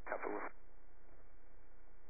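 A brief, half-second fragment of a voice over a helicopter's radio or intercom, narrow and tinny, cut off just after the start; then only the intercom's steady low hum and hiss.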